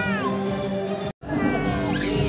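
Music playing, with a few rubbery squeaks from latex modelling balloons being twisted, sliding up and down in pitch near the start. The sound cuts out completely for an instant just past the middle.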